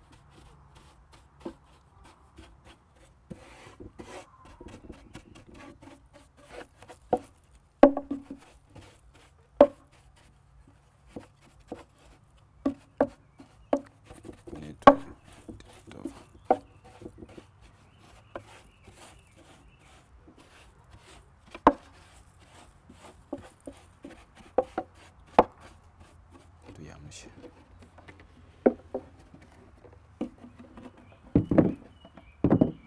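A brush scrubbing the bare wooden inside of a beehive box, sweeping out dirt and debris, with irregular sharp knocks as it strikes the floor and walls.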